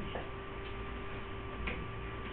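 A few faint, irregularly spaced clicks over a steady hum and background hiss.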